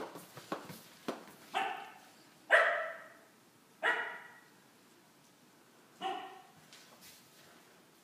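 A dog barking four times, spaced unevenly, the second bark the loudest. A few light knocks come before the first bark.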